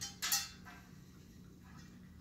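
A few short metallic clicks and a brief clatter in the first half second, the loudest about a third of a second in, over a low steady electrical hum.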